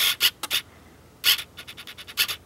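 Handling noise from fingers rubbing and scratching on a cardboard product box held close to the microphone: a few short scrapes in the first second and one just past a second, then a run of faint light ticks.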